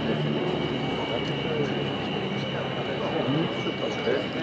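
UTVA Lasta 95 single-engine propeller trainer on its landing approach, its engine and propeller giving a steady drone with a thin high whine above it.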